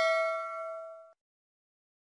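A bell-like ding sound effect, as used for a subscribe-button notification bell, ringing with several clear tones and dying away until it cuts off abruptly about a second in.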